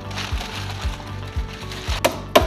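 Background music with a steady beat, about four beats a second, over held tones.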